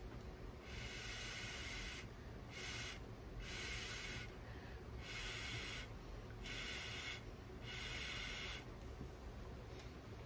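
A person blowing short puffs of air through a straw onto wet acrylic paint, a series of faint breathy hisses, each under a second or so, with pauses between.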